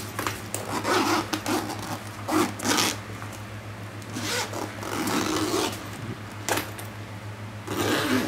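Zipper on a fabric travel briefcase being pulled open around the bag's edge in a series of short, uneven strokes. The zipper is a little dry and stiff from long storage.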